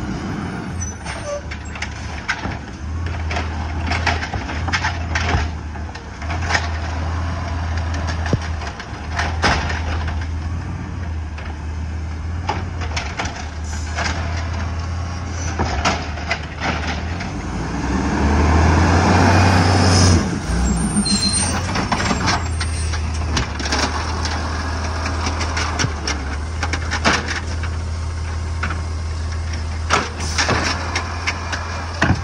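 Automated side-loader garbage truck's engine running steadily as the truck pulls up to a curbside cart, with frequent air-brake hisses and clicks. The engine and machinery grow louder for a couple of seconds about two-thirds of the way through.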